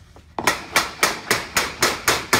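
A rounded hammer tapping a round sheet-metal collar to seat it in the opening of a sheet-metal fireplace chase cap: a quick, even run of sharp metallic strikes, about four a second, starting about half a second in.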